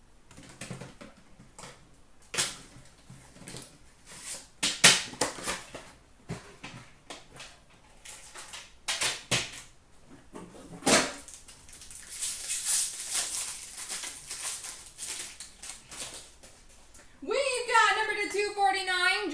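Cardboard box and card packaging being handled and opened by hand: a string of light taps, knocks and clicks. Then several seconds of crinkly rustling and tearing as the wrapping comes off the cards, with a voice starting near the end.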